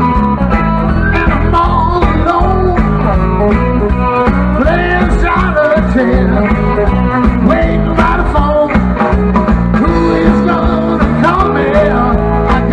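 Live blues-rock band playing a shuffle: electric guitars with bending notes over drums, bass and keyboard, played through a stage PA.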